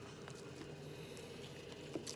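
Faint steady hum of a microwave oven running as it heats rice, with a light click of a metal fork against the plastic meal tray near the end.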